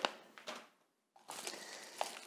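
Faint crinkling and rustling of a plastic bubble-wrap pouch being handled, starting a little after a second in.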